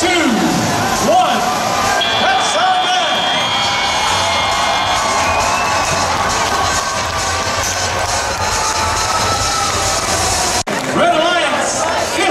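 An arena crowd cheering at the close of a robotics match. About two seconds in, just after a 'three, two, one' countdown, a steady electronic end-of-match buzzer sounds for about three seconds. A sudden cut near the end is followed by more PA announcer speech.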